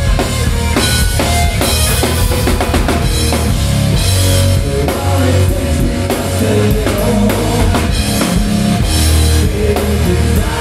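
Hard rock band playing live: electric guitar, bass guitar and a drum kit with kick drum and cymbals, loud and steady throughout.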